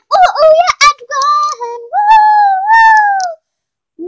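A child's high voice singing a playful, wordless tune in short phrases, ending on a longer gliding note.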